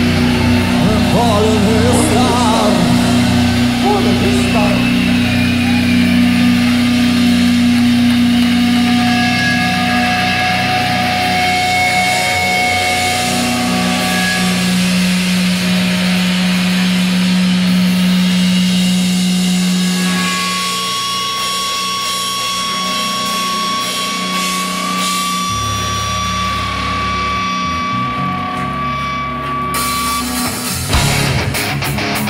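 Live rock band playing a slow passage of long held notes that change pitch every few seconds, with wavering voices in the first few seconds. It gets slightly quieter about twenty seconds in.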